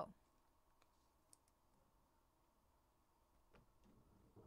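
Near silence: room tone with a few faint, isolated clicks.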